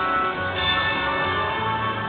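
Electronic game music from a Buffalo Gold Revolution video slot machine playing steadily during its free-game bonus spins, with a new high tone coming in about half a second in.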